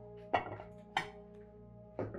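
Soft background music of steady held tones, with two sharp clinks of dishes being set down on a table, one near the start and one about a second in.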